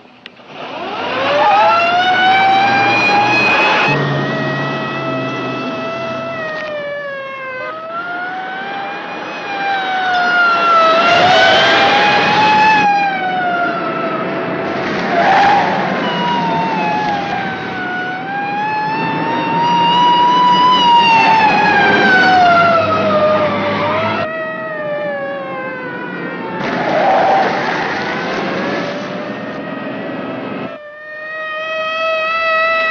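Police car siren wailing, its pitch rising and falling slowly over and over, starting about a second in, over a low steady car engine sound, with abrupt shifts in the sound at several points.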